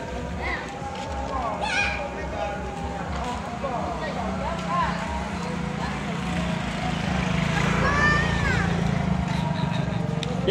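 Background chatter and calls of children's voices outdoors, with a steady low hum joining in from about four seconds in.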